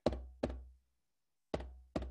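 A deep drum struck in a slow heartbeat rhythm: two strikes close together, a pause, then two more, each ringing low before it dies away.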